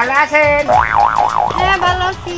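A comic sing-song voice that breaks into a wide, fast, wobbling warble of pitch in the middle, over background music with a steady beat.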